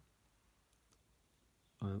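A few faint, short clicks of metal drawing dividers being set against a plastic set square's scale, with speech starting near the end.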